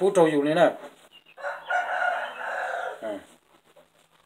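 Rooster crowing once at close range: a harsh call of about two seconds starting a second and a half in, ending with a short falling note.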